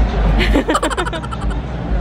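A person laughing, a quick run of short laughs from about half a second in to about a second and a half, over a steady low rumble.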